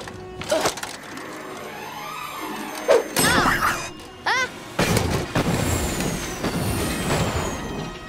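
Animated-film soundtrack: music with sound effects of a homemade rocket failing in flight. A heavy thud comes about three seconds in, then a rough, crackling rush of noise starts suddenly about five seconds in as the rocket gives out and trails smoke, with thin high whistles falling in pitch near the end and short cries of alarm.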